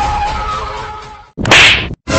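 A steady hiss with faint held tones, then, after a short break about one and a half seconds in, a brief, very loud whip-like swish sound effect.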